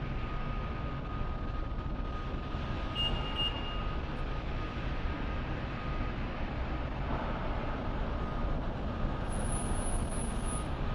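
Steady city street noise: a low rumble of traffic, with a faint thin whine held for the first several seconds and a brief higher tone about three seconds in.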